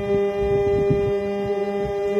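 A man holding one long sung note over the steady chord of a harmonium.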